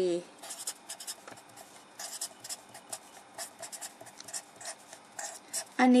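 Marker pen writing on paper: a run of short, irregular scratchy strokes as a line of characters is written out.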